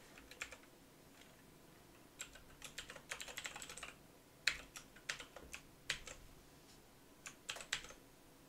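Typing on a computer keyboard: irregular groups of keystrokes, with a quick flurry about three seconds in, a few separate harder strokes after it and a short burst near the end.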